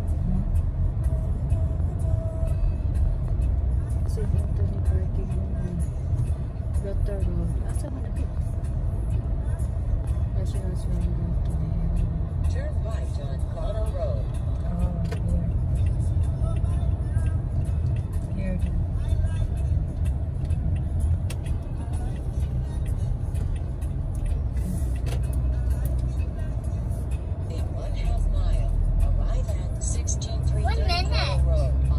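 Steady low rumble of a car driving at moderate speed, heard from inside the cabin: engine and tyre noise on the road.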